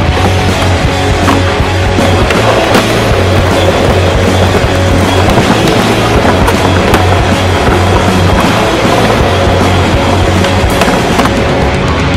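Skateboard wheels rolling on concrete, with several sharp clacks of the board during tricks, under loud music.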